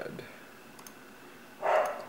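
Quiet pause between a man's sentences, with a few faint clicks, then a short vocal sound from him near the end just before he speaks again.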